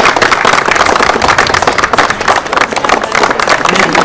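A group of people applauding: dense, steady hand clapping.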